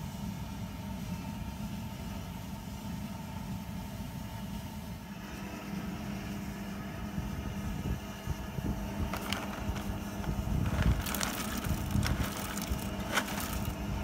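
Steady low rumble of a stainless keg boil kettle of wort on the heat, with crackly rustling and crinkling of a foil hop packet being handled and opened, starting about nine seconds in and getting busier.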